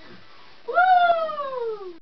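A single high-pitched whoop of celebration, starting about two-thirds of a second in, jumping up in pitch and then sliding slowly down for over a second.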